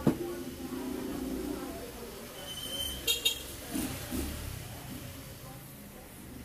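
A motor vehicle passing by, with a steady droning tone for about the first two seconds over a low rumble, then two sharp clicks about three seconds in.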